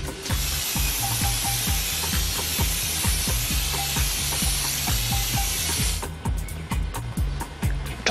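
Aerosol spray paint can spraying in one long steady hiss that cuts off suddenly about six seconds in, over background music with a steady beat.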